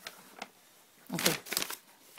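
Soft rustling and a few small clicks close to the microphone, like clothing or hands moving against it, with a short spoken "okay" a little over a second in.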